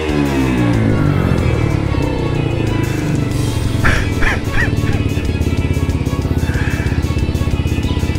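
The 50cc engine of a Chinese Honda Monkey replica idling with a steady, even beat, running after its first start on a newly connected electric starter, with music playing over it.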